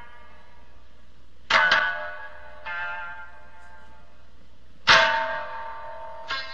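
Biwa strings struck hard with the plectrum: sharp, ringing strokes that die away slowly, the first a quick double attack about a second and a half in, a softer one near three seconds, and the loudest just before the end.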